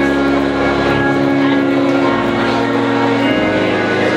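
Church organ holding sustained chords, the chord changing about three seconds in.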